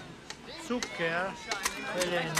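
Irregular sharp clicks and knocks, about half a dozen in two seconds, with a faint voice between them.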